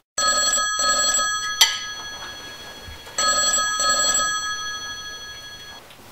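Telephone ringing: two rings about three seconds apart, each a double pulse of steady tones that fades away, with a sharp click between them.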